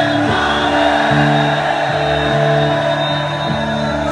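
Live rock band music: held chords and bass notes that change every second or so, with singing from many voices.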